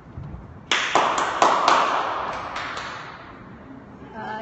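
A short burst of clapping from a small group of people. It starts abruptly about a second in and dies away over the next two seconds.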